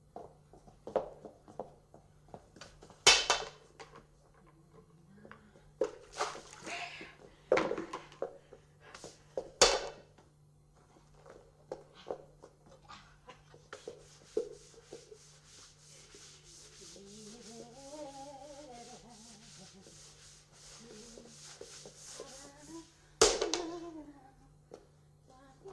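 Knocks and clatters of a broom and bucket as washing powder is flung and swept across a bare floor, the loudest about three seconds in and near the end. In the second half comes a steady hissing scrub, with a woman humming a few notes partway through.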